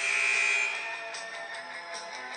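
Arena scoreboard buzzer sounding one loud blast of about half a second, then fading, which signals the end of a timeout. Music plays underneath.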